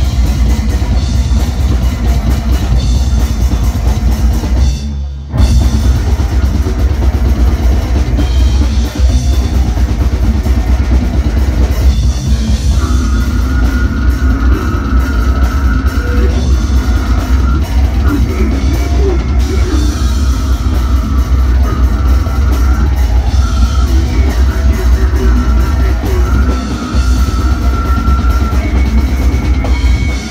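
Brutal death metal band playing live: a drum kit with heavy distorted guitars and bass, loud and dense, with a short break about five seconds in before the band comes back in. From about thirteen seconds in, a high held note that steps in pitch runs over the riff.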